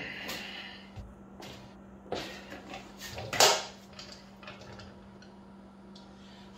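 A few scattered knocks and clunks of metal equipment being handled at the motorcycle's rear, the loudest about three and a half seconds in, over a steady low hum.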